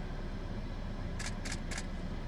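Idling vehicle engine, a steady low rumble, with three short sharp clicks a little past a second in.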